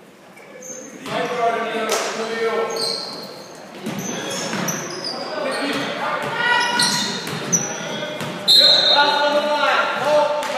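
Basketball game in a gym: the ball bouncing on the hardwood court amid players' and spectators' calls and shouts, echoing in the hall. It is quiet for about the first second, then busy, loudest near the end.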